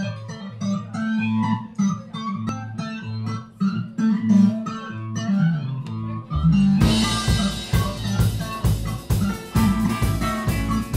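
A live band opening a song: an electric guitar and an upright bass play a riff together, then about six and a half seconds in the drum kit comes in with cymbals and the full band plays on.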